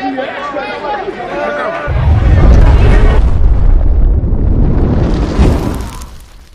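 A car at close range making a very loud, distorted low rumble that overloads the microphone. It starts suddenly about two seconds in, holds for about four seconds and then fades away.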